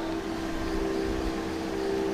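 A steady background hum with two held tones, plus a faint even hiss, in a pause between narrated phrases.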